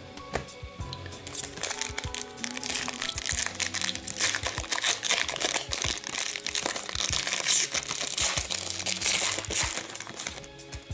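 Foil wrapper of a hockey trading-card pack crinkling as it is worked open by hand, starting about a second in and running on, with background music underneath.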